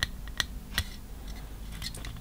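Hands handling hard plastic model-kit parts: a few light clicks and taps, the clearest about half a second apart in the first second, then fainter ticks.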